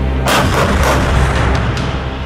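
Towed artillery guns firing a ragged volley: several shots close together about half a second in, over steady background music.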